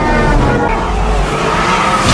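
Film sound effects of a vehicle speeding, with skidding, mixed over music.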